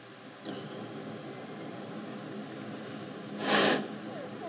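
Steady faint hiss of static on an open radio line, with one short burst of noise a little before the end.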